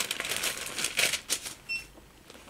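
Thin Bible pages being leafed through: a crisp papery rustle with quick irregular flicks, dying away near the end.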